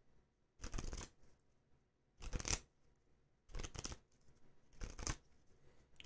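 Four short rustling handling noises, about a second and a quarter apart, each lasting about half a second, with near silence between them.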